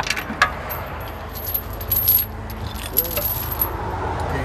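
Steel tow safety chain clinking and rattling as its links are gathered up and handled, in short bunches of clinks, over a low steady rumble.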